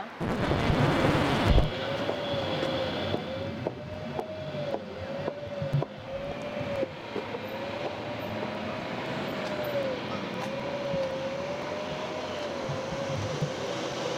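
City street traffic noise, starting with a loud rush as if a vehicle passes close, then a steady hum. Through it runs a single thin tone that wavers up and down about once a second.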